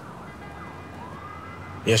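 A faint siren wailing, its pitch sliding slowly up and down, over a low steady background hiss.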